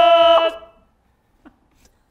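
A voice holding one long, steady sung note that stops about half a second in and trails off in a short echo, followed by near silence.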